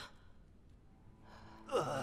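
A quiet pause, then a sharp human gasp near the end: a short breathy intake breaking into a brief voiced cry that drops in pitch.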